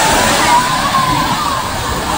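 The Lembah Anai waterfall in flash flood, a loud steady rush of muddy floodwater pouring down and surging through the river below. A thin wavering high sound rides over it in the first second or so.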